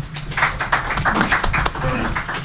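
Scattered applause from a small audience: many individual hand claps, irregular and closely spaced, most of them in the second half-second onward.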